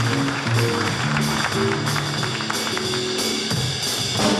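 Live jazz band playing: electric guitars and electric bass over a drum kit, with a moving bass line and steady cymbal strokes.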